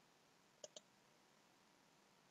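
Near silence broken by two quick, faint computer mouse clicks about a tenth of a second apart, under a second in.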